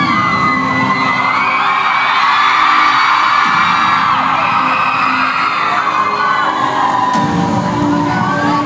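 Concert crowd screaming and cheering loudly, a dense wall of many high-pitched voices, over a steady synth intro. The screaming swells through the middle and eases near the end as the steady synth tones come back through.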